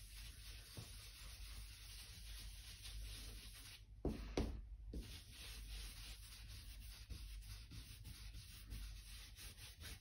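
Faint, rapid scrubbing of a round ink-blending brush working Distress Oxide ink through a stencil onto card, with a couple of soft knocks about four seconds in.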